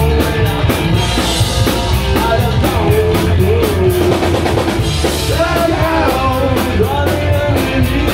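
Punk rock band playing live: distorted electric guitars and a drum kit keeping a fast, steady beat, with a man singing over them.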